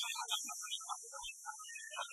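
Steady high hiss of an old, worn cartoon soundtrack, with faint scattered musical notes under it.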